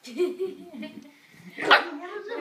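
A puppy barking with a person laughing. One loud, sharp bark comes near the end.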